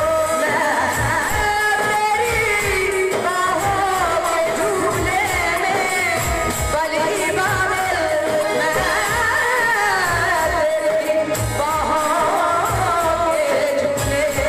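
A man singing a Hindi film song into a microphone over backing music with a steady low beat; the sung melody rises and falls in long held lines.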